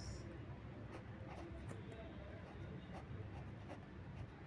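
Faint scratching of a pen writing on ruled notebook paper, in short irregular strokes.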